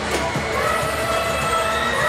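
A held chord of several steady tones sets in about half a second in, over a noisy fairground background.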